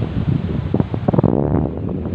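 Wind buffeting a phone's microphone in uneven gusts, a loud, low rumbling rush.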